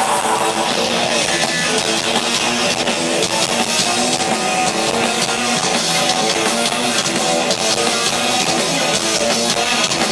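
Rock band playing live at full volume: electric guitars and drum kit, loud and steady, heard from among the audience.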